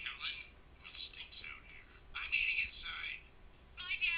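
Cartoon dialogue from a video playing through the Sony Xperia X1 phone's small loudspeaker. It sounds thin and tinny with almost no bass, speaking in short bursts with brief pauses.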